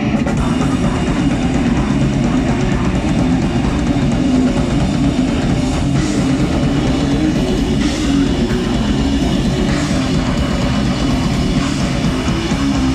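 Live heavy rock band playing loud and continuously: distorted electric guitar, bass guitar and drum kit, with cymbal crashes about every two seconds in the second half.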